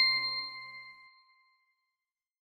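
A single bright bell-like chime, the closing note of an intro jingle, ringing out and fading away over about a second.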